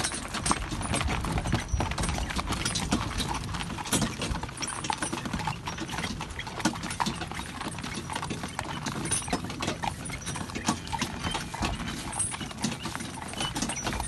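Hooves of a two-horse carriage team clip-clopping steadily on a gravel track, over the continuous rolling rattle of the carriage.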